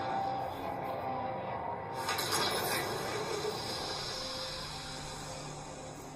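Film trailer music playing through a speaker and picked up in the room, with a swell about two seconds in and a low held note near the end.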